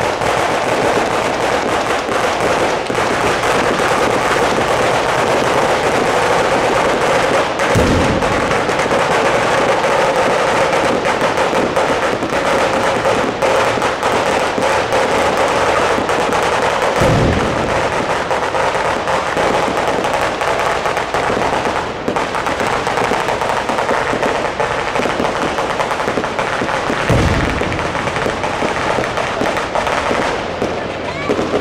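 Moschetteria, a ground-level Sicilian firework battery, crackling and banging in a dense, unbroken rapid-fire volley. Three deep booms of aerial firework shells break through, spaced about nine seconds apart.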